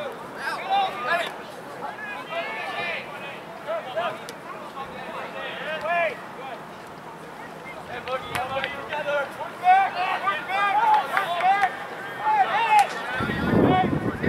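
Distant voices shouting and calling across an open soccer field during play, coming in bursts with short lulls between them. Wind rumbles on the microphone near the end.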